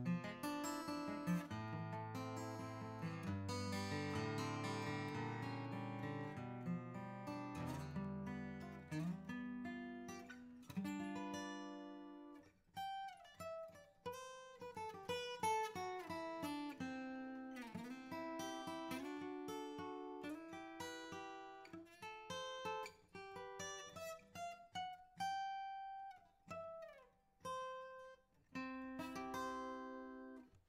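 Furch D-SR dreadnought acoustic guitar, with a Sitka spruce top and Indian rosewood back and sides, played fingerstyle. For about the first twelve seconds it plays full chords over a moving bass line. It then thins to single-note melody lines with sliding notes and short gaps, and a chord rings out again near the end.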